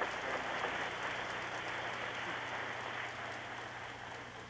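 Audience applause, a dense crackle of many hands clapping that slowly dies away.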